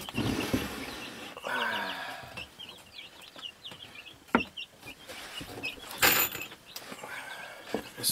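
Birds chirping in quick short calls over and over in the background, while 2x4 boards are handled on a plywood floor: a sharp wooden knock about four seconds in and a louder clatter about six seconds in.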